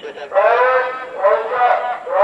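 Men shouting commands at full voice: two long, drawn-out shouts one after the other.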